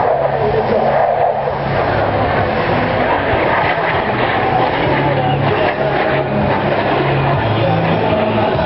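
F/A-18 Hornet fighter jet's twin jet engines heard as a loud, steady rush of noise during a display pass overhead, with voices mixed in.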